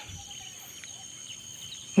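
Faint, steady, high-pitched chorus of insects chirring.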